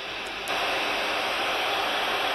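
Static hiss from a PNI Escort HP 62 CB radio's speaker on an empty channel in AM mode, steady and getting louder about half a second in.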